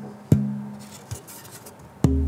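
Alpine spruce guitar top plate being tap-tested by hand: a sharp tap about a third of a second in and a lighter one about a second in, each ringing with a low tone that dies away.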